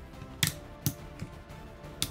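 Plastic clicks and knocks from the Voltron Red Lion toy's parts as its legs are folded down: one sharp click about half a second in and two softer ones after it. Quiet background music plays underneath.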